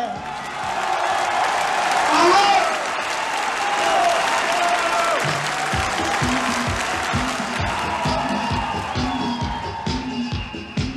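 Concert audience applauding and cheering between songs, with a voice calling out over it. About five and a half seconds in, the band's drums start a steady disco beat at about two beats a second under the continuing applause.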